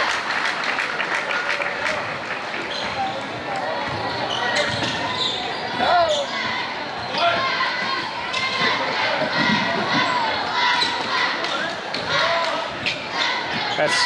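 Basketball being dribbled on a hardwood gym floor during live play, a run of irregular bounces, over the chatter of the crowd in a large echoing gymnasium.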